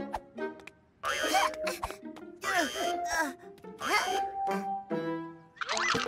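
Children's cartoon music with a small character's voice making short wordless straining efforts, in four bursts about a second and a half apart.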